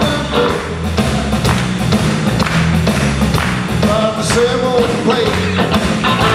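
Live blues-rock trio playing: electric guitar, electric bass and drum kit, with a male voice singing a line near the end.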